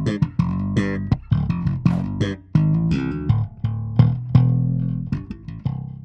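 Five-string electric bass played slap style: quick thumb slaps and string pops, each note with a sharp percussive attack, over a busy low funk line.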